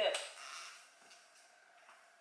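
Brief crinkle of a clear plastic takeout sushi container being handled, fading within the first second, followed by a couple of faint ticks.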